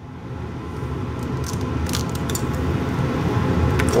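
A low rumble grows steadily louder, with a few faint light clicks, the last just before the end as an egg is cracked into a nonstick skillet.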